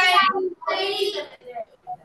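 Several children answering together in a drawn-out chorus, their voices coming through a video-call connection.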